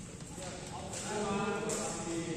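Badminton racket hitting a shuttlecock, sharp smacks with a hall echo, and a man's voice calling out in the second half.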